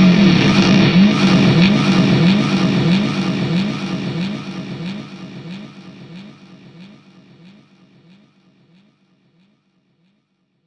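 Electric guitar outro: a short rising pitch slide with a tick, repeated about twice a second and fading steadily to silence near the end.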